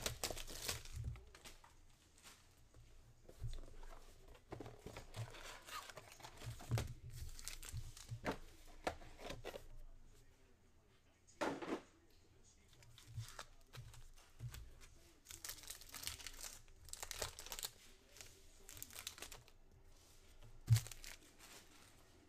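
Trading card pack wrappers and box packaging crinkling and tearing as packs are opened by hand, in scattered rustling bursts with one louder tear about halfway through.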